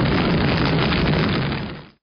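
A steady, loud rumbling and crackling noise effect that fades out quickly in the last half second.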